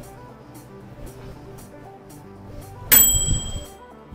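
Background music with a steady beat. About three seconds in, a single loud bell ding with a ringing tail, from the end-of-cycle bell of a mechanical-dial microwave timer.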